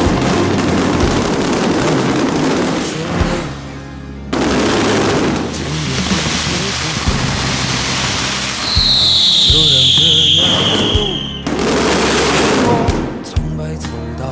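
Music soundtrack mixed with the dense crackle of strings of firecrackers, cut off abruptly twice. A little past the middle, a high falling whistle lasts about two seconds.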